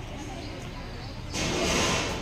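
Background murmur of people talking at outdoor tables, then a loud rushing noise that swells in about two-thirds of the way through.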